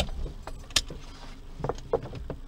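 A few sharp clicks and clacks, the loudest right at the start, another about three-quarters of a second in and several smaller ones near the end, over a low rumble.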